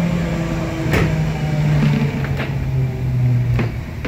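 MXA HÉV electric train's traction motor humming with a pitch that falls steadily as the train slows, the hum dying away just before the end. A sharp clack comes about a second in, with a few lighter knocks later.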